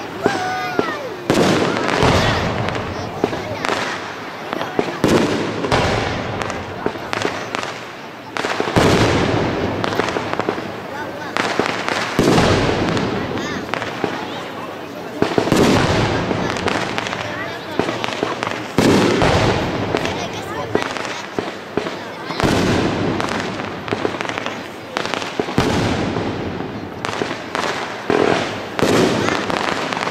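Aerial fireworks shells bursting in rapid succession, a dense run of bangs and crackling with louder surges every few seconds, and a few brief whistles near the start.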